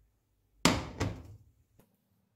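Tefal Unlimited 28 cm non-stick frying pan set down on a glass-ceramic hob: two sharp clunks about a third of a second apart, the first the louder, then a faint click near the end.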